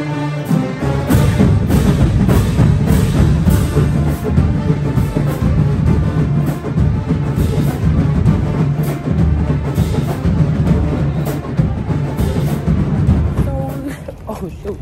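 College marching band playing loudly in gymnasium bleachers: a heavy, driving beat of bass drums and percussion under low brass.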